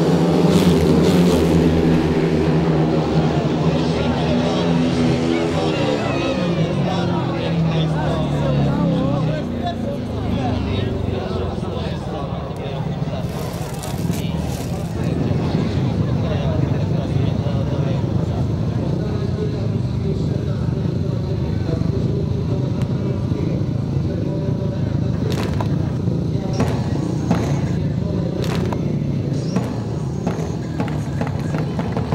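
Speedway stadium sound: motorcycle engine noise falling in pitch over the first several seconds, then a crowd chanting and cheering, with a few sharp claps near the end.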